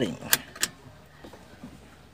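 Two sharp clicks about a third of a second apart, then a few faint knocks from parts being handled.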